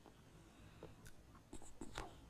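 Near silence: room tone, with a few faint soft clicks near the end.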